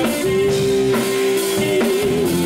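Live band playing with electric guitar, bass guitar, drum kit and keyboard, one note held steady for most of the two seconds.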